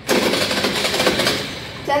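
Small scooter engine idling with a fast, even putter, easing off slightly near the end.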